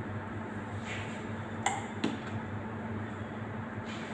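A few light metallic clinks from a steel ladle knocking against the steel pot and the metal cake stand as chocolate ganache is poured onto a cake, the sharpest one ringing briefly, over a steady low hum.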